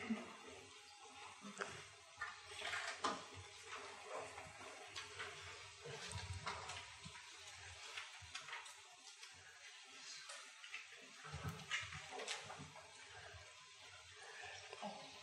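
Quiet room with a faint steady hiss and scattered soft rustles and light taps at irregular moments.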